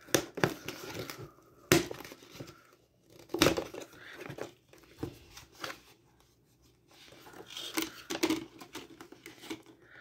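Paper and plastic wrapping on a toy box being torn and crinkled by hand, in irregular short rips and rustles, with a brief pause about six seconds in.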